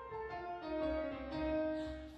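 Live grand piano with orchestral accompaniment playing an instrumental passage, a melody stepping down in pitch note by note.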